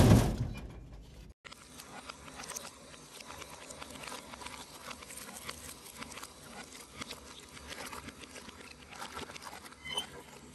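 A loud thud with a short fading tail, then soft, wet squishing and crackling as ground frog-leg meat is pushed through a metal sausage stuffer's tube into the casing.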